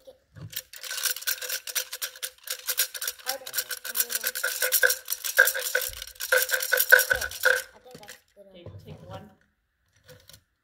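A cup of wooden fortune sticks (kau cim) shaken hard, the sticks rattling rapidly against each other and the cup for about seven seconds, then stopping. This is the shaking that works one numbered stick loose to pick a fortune.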